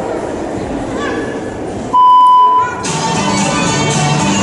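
Murmur of a crowd in a large hall, cut by a single loud electronic beep of under a second about two seconds in; right after it the gymnast's routine music starts over the hall's speakers.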